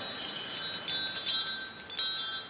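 Altar bells, a cluster of small bells, shaken in several short jingling bursts as the priest receives communion from the chalice.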